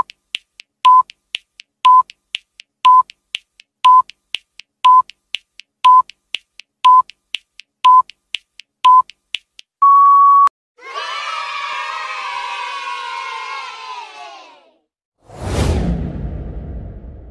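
Quiz countdown-timer sound effect: a short electronic beep once a second for ten seconds with a softer tick between each, ending in one longer beep as time runs out. Then a burst of crowd cheering for about four seconds, and a whoosh near the end.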